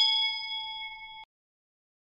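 Bell-chime sound effect for a notification-bell button: a single ding ringing with several clear overtones and fading, then cut off abruptly just over a second in.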